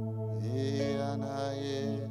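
Soft sustained keyboard chords, with a wordless voice joining about half a second in: it glides up in pitch, holds a long note and fades near the end.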